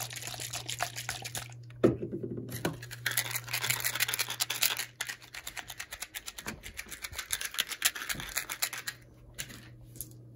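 Fast fingernail tapping and scratching on small handheld objects: a green can, then a small red-and-white box, making many quick crisp clicks and scrapes a second. There is one sharp, louder click just before two seconds in.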